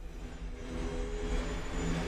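A low rumbling drone with a few steady held tones, slowly getting louder, like an aircraft-style sound bed opening a radio-network outro.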